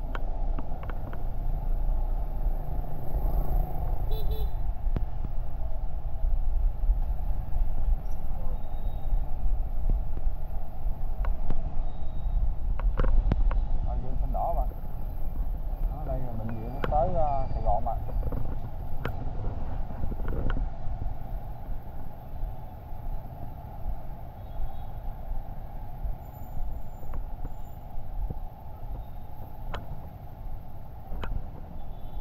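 Low wind rumble on the microphone and street traffic noise from a moving motor scooter in city traffic, easing after about twenty seconds as the scooter slows to a stop at a red light. Brief snatches of voices come through around the middle.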